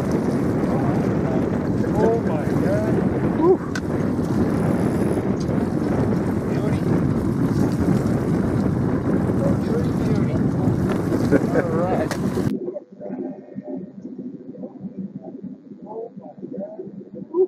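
Wind rushing steadily over the microphone in an open boat, with faint voices mixed in. The rushing cuts off abruptly about twelve and a half seconds in, leaving a much quieter, thinner sound with scattered voice fragments.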